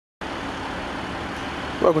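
Steady background noise with a faint low hum, which cuts in suddenly just after the start; a man's voice begins near the end.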